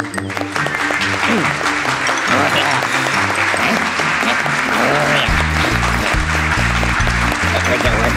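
A crowd cheering and applauding over cartoon background music, with a bouncy bass line coming in about five seconds in.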